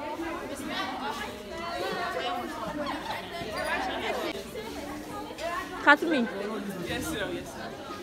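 Many voices chattering at once in a large, echoing hall. About six seconds in, one voice gives a short, loud, high-pitched cry above the chatter.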